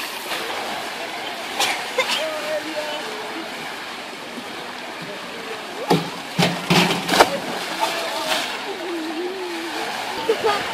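Outdoor swimming pool ambience of chatter and water, with a short, loud cluster of splashes about six to seven seconds in as a person jumps into the pool.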